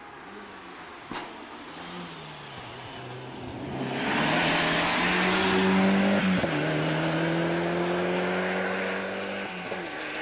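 Rally car engine working through the gears as the car approaches, then passing close with a loud rush of engine and tyre noise about four seconds in. Its engine note then holds steady and slowly fades and drops in pitch as it drives away. A single sharp click about a second in.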